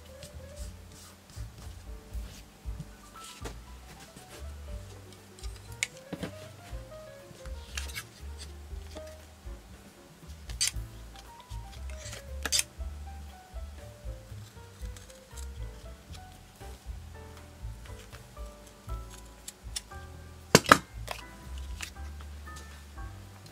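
Fabric scissors snipping a few times, with sharp separate clicks, over soft background music. A louder double click comes near the end.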